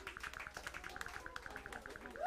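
Audience clapping at the end of a live band's song, a rapid patter of claps with a few faint voices calling out.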